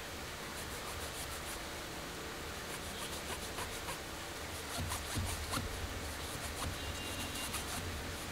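Terry cloth rubbing a metal camera ring in short bursts of quick scratchy strokes, loudest about five seconds in, over a steady hiss.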